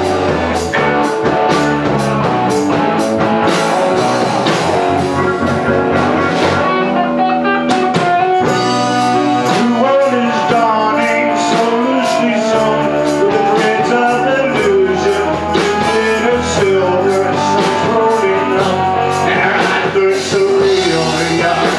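A live rock band playing: electric guitars over a drum kit and keyboard, loud and steady.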